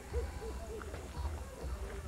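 A person's low, quiet voice making short hooting or murmuring sounds without clear words, over a steady low hum.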